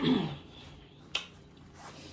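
Paper napkin rustling as hands are wiped, under a short voice sound falling in pitch at the start, then a single sharp click about a second in.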